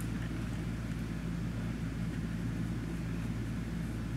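A steady low hum with no distinct sounds in it: room tone.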